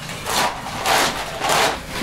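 A long metal poker scraping and rubbing against the inside of a clay bread oven, in three strokes about two-thirds of a second apart.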